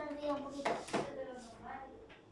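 A voice trailing off, then two short sharp knocks in quick succession about a second in, followed by fainter talk.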